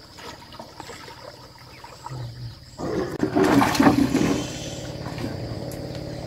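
Water lapping and trickling around a small wooden boat, then a loud rush of sloshing water for about a second and a half, a little before halfway. After it a steady, low motor-like hum sets in.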